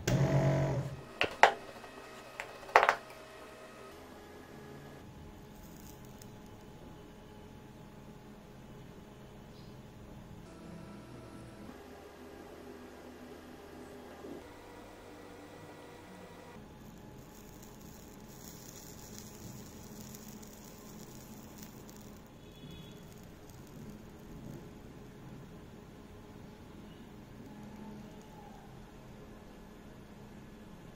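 A short loud sound in the first second, then two sharp clicks about a second and a half apart. After that, a faint steady background with a few soft sustained tones.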